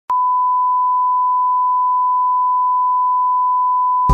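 A steady electronic beep: one pure tone at a single pitch, starting just after the beginning and holding level without a break.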